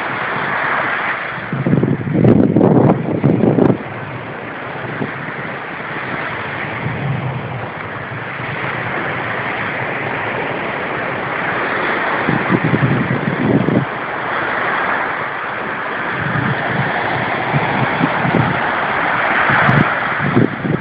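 Small ocean waves breaking and washing up the beach, a steady rushing hiss, with gusts of wind buffeting the microphone several times, strongest from about two to four seconds in.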